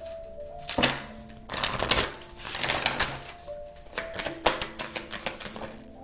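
A deck of oracle cards being shuffled by hand: a rapid papery clicking in several quick runs. Soft background music with long held notes plays underneath.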